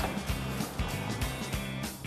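Background music with a steady beat.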